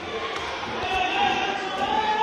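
Voices echoing in a large hard-walled space, with footsteps knocking on concrete stairs.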